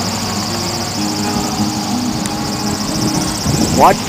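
Small homemade wind turbine's carved wooden prop spinning freewheeling, with no load on its alternator: a steady whir with a low hum that wavers in pitch. The prop's unsharpened trailing edges and square tips make it run noisy.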